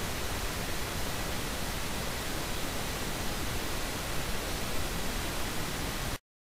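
Steady hiss of recording background noise, an even rush across the whole range with no other sound in it.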